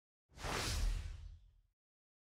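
A single whoosh sound effect for an animated end-card transition, with a deep low rumble under a hissy rush, swelling in about a third of a second in and fading out within about a second.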